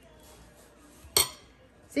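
A single sharp clink of a metal fork against a ceramic plate about a second in, as a fried egg is laid onto the burger.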